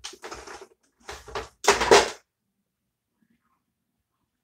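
Handling noise from rummaging among plastic lip-gloss tubes and cosmetics: three short clattering bursts within the first two seconds, the last the loudest.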